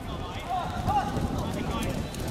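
Players calling out during a five-a-side football match, with footsteps and ball touches on the wet court.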